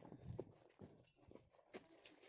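Near silence with a few faint, irregular footsteps on dry ground.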